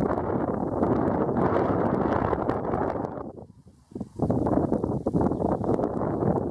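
Wind buffeting the camera microphone: a loud, rough rumble that dies away for about a second a little past the halfway point, then gusts back in.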